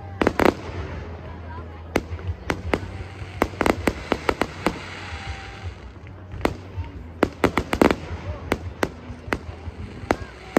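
Aerial fireworks going off: a running series of sharp bangs at uneven intervals, some coming in quick clusters, from shells bursting overhead.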